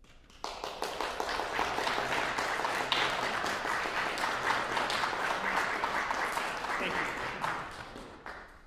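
Audience applauding, starting abruptly about half a second in and dying away near the end.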